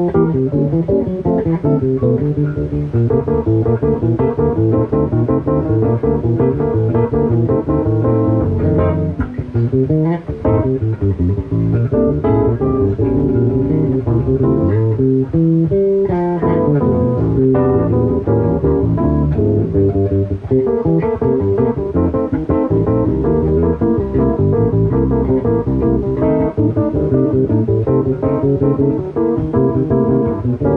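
Electric bass and a Yamaha CP stage piano playing an instrumental piece together, the bass carrying a strong, busy line under the piano's chords.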